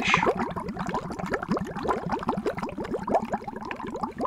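Water bubbling: a dense, steady stream of small bubbles, many a second.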